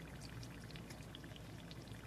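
Battered onion ring pakoras deep-frying in hot oil: a faint, steady sizzle with many small scattered crackles, as the batter browns and crisps near the end of frying.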